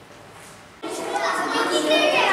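A group of children chattering and talking over each other, starting suddenly a little under a second in after a quiet start.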